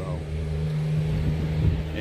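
A steady low engine-like hum with a constant pitch.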